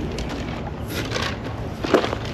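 Footsteps on a sandy dirt path, irregular soft steps over a steady low rumble of wind on the microphone.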